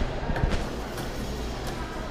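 Shopping-mall hubbub: background music and the voices of people around, with a dull bump about half a second in.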